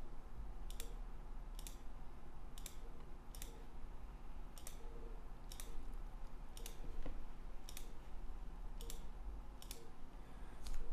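Computer mouse clicking about once a second, many clicks heard as a quick press-and-release pair, while open files are closed and saved one after another.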